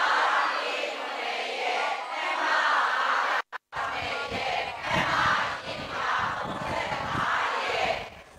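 An audience of many voices calling out together in repeated swells, about one every second or so. The sound cuts out completely for a moment about three and a half seconds in.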